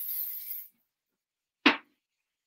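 Aerosol lifting spray hissing as it is spritzed through a mannequin's hair, stopping under a second in. Near the end, a single sharp knock as something hard is set down.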